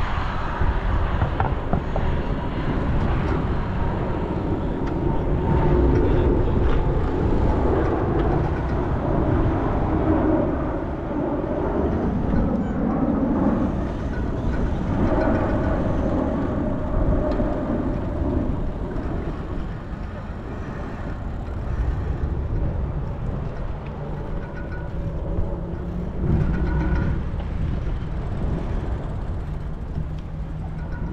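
City road traffic passing alongside a moving bicycle, heard through a handlebar-mounted action camera's microphone with heavy low rumble from wind and riding. The traffic noise swells and fades as vehicles pass, busier in the first half.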